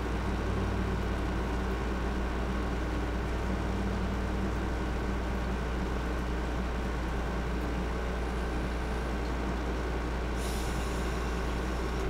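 A steady low hum with several higher tones held over a background hiss. A faint high hiss joins near the end.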